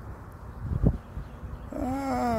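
Low rumbling noise on a handheld camera's microphone while walking outdoors, with a single thump about a second in, then a drawn-out voice starting near the end.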